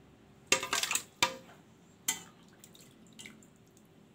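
Pumpkin soup being poured into the empty plastic jar of a Moulinex blender: a few knocks and splashes of liquid, the loudest about half a second in. The blender is not yet running.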